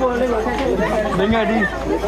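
Several people talking over one another in Vietnamese: a crowd's chatter.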